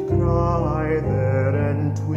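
A male solo singer holding sustained notes with vibrato over an instrumental accompaniment.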